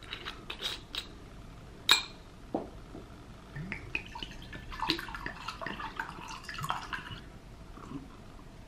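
Screw cap twisted off a small glass bottle of water with a few clicks, the sharpest about two seconds in, then water poured from the bottle into a glass tumbler for about three seconds.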